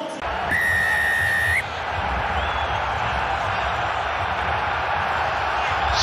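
A referee's whistle blown once in a single steady blast of about a second, signalling kick-off. Under it and after it, a packed rugby stadium crowd cheers in a steady din.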